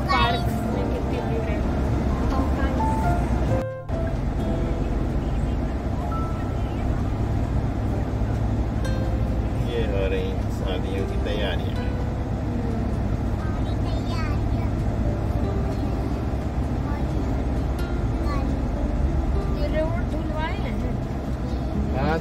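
Steady road and engine rumble heard inside a moving car's cabin. Faint voices come and go over it, and the sound cuts out briefly about four seconds in.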